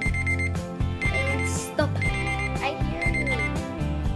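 Background music with a steady beat, over which a digital timer alarm beeps in rapid high-pitched pulses, in four half-second bursts one second apart, signalling that the set time has run out.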